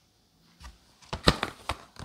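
A few short knocks and a rustle starting about a second in, as a boxed whetstone is picked up and handled.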